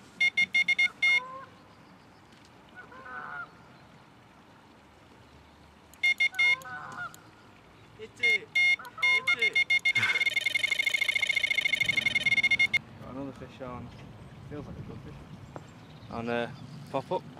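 Delkim electronic carp bite alarm beeping. First come several short bursts of fast single-tone bleeps, then a continuous rapid run of bleeps for nearly three seconds: a carp taking line on a run.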